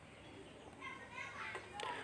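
Faint, high-pitched voices in the background, a few short calls in the second half, over quiet room tone.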